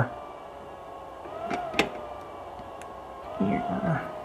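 Cooling fan of Apple's heated iPhone display-removal press running with a steady, very annoying whine whose pitch swells up and back down twice. A single sharp click comes about two seconds in, as the press's slider is adjusted.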